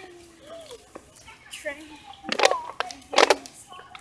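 Indistinct chatter of young children's voices, in short scattered bits, with two louder calls a little after halfway.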